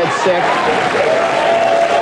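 Talk-show studio audience applauding, with a man's voice over it.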